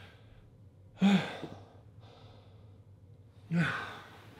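A man's heavy sighs of exhaustion straight after fifty push-ups: two loud exhales with some voice in them, one about a second in and one near the end, with quieter breathing between.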